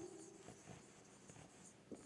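Near silence with the faint sound of a pen writing on an interactive whiteboard.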